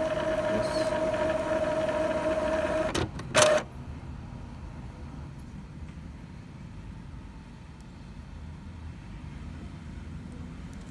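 Epson ink-tank inkjet printer running its head-cleaning cycle: a steady motor whine stops about three seconds in, then comes one short loud burst of mechanical noise, and after it a quieter steady running noise as the printhead carriage moves.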